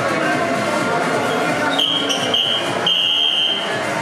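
A shrill, steady high-pitched signal tone starting a little under two seconds in, sounding in three blasts with two short breaks, over background chatter and music.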